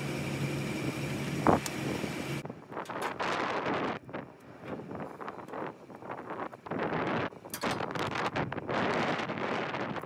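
Wind gusting on the microphone in uneven rushes, over the rustle and knocks of ratchet straps being handled. A steady low hum sits under it for the first couple of seconds and cuts off abruptly.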